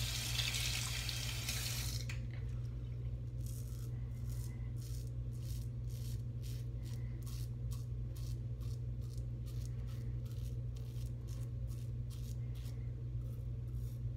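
Tap water running for about the first two seconds. Then a stainless steel double-edge safety razor scrapes through lather and stubble in short, quick strokes, about two to three a second, over a steady low hum.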